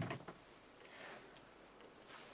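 Near silence: quiet room tone with a few faint ticks.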